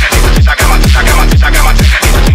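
Loud electronic phonk track with a heavy, constant bass. Distorted bass notes slide down in pitch about twice a second.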